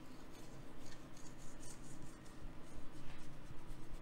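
Fingers pressing and rubbing raw pizza dough along the edge of a round metal baking pan, sealing the top layer of dough to the bottom one: soft, irregular rubbing with light scratchy touches.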